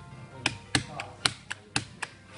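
A series of sharp taps or clicks, about five in two seconds at uneven spacing, with faint music behind.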